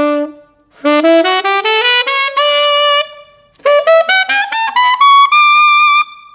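Tenor saxophone with a Vandoren V16 metal mouthpiece playing fast ascending E major scale runs: a held note fades out, then two quick climbs with a short break between them, the second rising into the altissimo register and ending on a held high note near the end.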